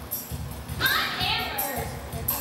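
High, excited voices of young performers calling out, with one short call about a second in, over a music track with a steady low beat.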